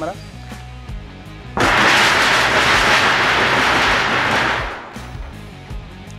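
A galvanized corrugated steel roofing sheet worked by hand gives out a loud, continuous metallic noise. It starts suddenly about a second and a half in and fades out after about three seconds. It is the noise a plain metal roof passes on.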